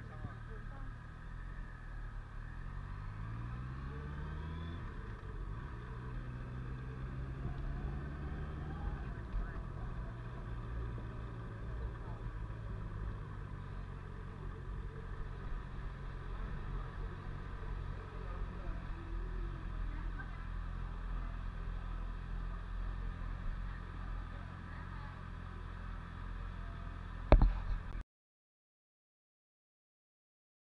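Motorbike engine pulling away, its revs rising a few seconds in, then running steadily at low speed. One sharp knock sounds near the end.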